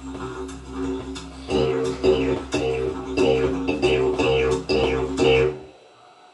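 Didgeridoo music playing from a TV, several players: a steady low drone with a rhythmic pulse over it. It cuts out suddenly near the end.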